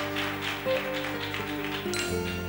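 Instrumental introduction to a Spanish song, played live by a band with guitar: held notes over a steady tapping beat of about four taps a second.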